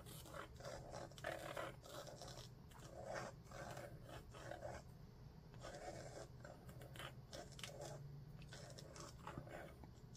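Pilot G-Tec-C4 gel pen scratching across watercolor paper in many short, irregular strokes, faint throughout, as loose outlines are drawn over painted leaves.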